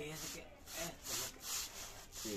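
Rhythmic rasping strokes, about two or three a second, like a saw or rasp working back and forth.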